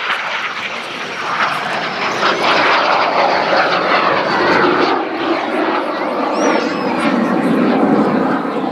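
L-39C Albatros jet trainer's Ivchenko AI-25TL turbofan, loud rushing jet noise as the aircraft passes low and pulls up into a climb. A faint high whine falls slowly in pitch, and the sound grows louder about two seconds in and holds there.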